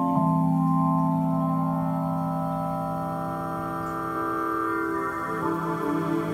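Synthesis Technology E370 quad morphing VCO's wavetable oscillators sounding a sustained organ-like chord. The chord changes just after the start and again about five seconds in, and the tone turns fluttery near the end as a parameter knob is turned.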